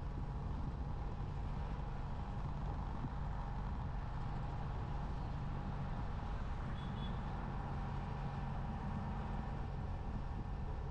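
Steady drone of a moving vehicle's engine, with road and wind noise, at an even speed. A brief faint high chirp comes about seven seconds in.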